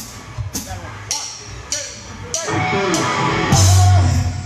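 Live rock band starting a song: about two seconds in, a run of steady ticks from the drums, a little under two a second, gives way to the full band of drums, bass and electric guitar coming in loud.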